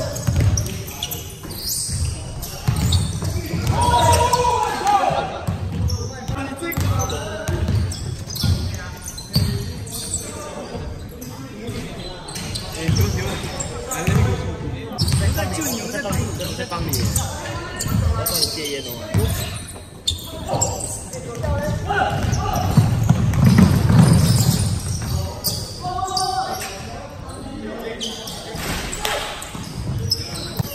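Basketball being dribbled and bounced on a hardwood gym floor during play, repeated irregular bounces ringing in a large hall, with players' voices calling out.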